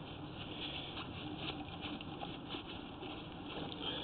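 Faint, fairly steady handling noise with scattered small ticks, as the recording camera is moved about in the hand.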